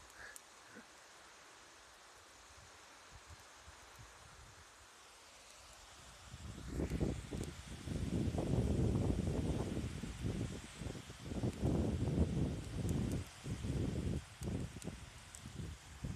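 Faint, quiet shoreline ambience. About six seconds in, gusts of wind begin buffeting the microphone, an irregular low rumble that swells and drops for the rest of the clip.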